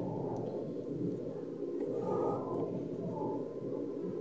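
Steady low background noise, the room tone of a home voice recording, with a few faint wavering tones.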